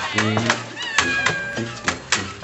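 Voices making high, gliding squeaky cries in a quick rhythm, with sharp clicks between them: people imitating the squeaks of a bed.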